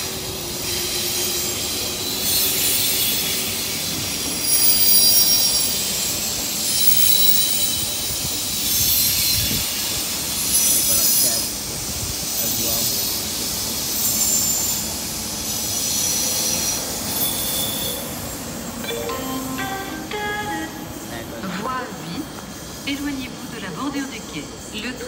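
SNCF TGV double-deck (Duplex) train rolling slowly past on the station tracks, its wheels squealing against the rails in high-pitched tones that swell and fade repeatedly.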